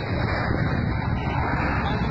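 Indistinct voices over a steady low rumble of outdoor noise.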